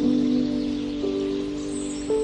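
Background music of sustained, chime-like notes, moving to a new note about halfway through.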